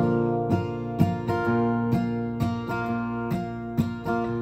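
Acoustic guitar strummed in a steady rhythm, the chord ringing on between strokes: the instrumental lead-in to a gospel song.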